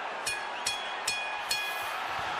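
Boxing ring bell struck four times in quick succession, each strike ringing on, over a steady crowd murmur in the arena.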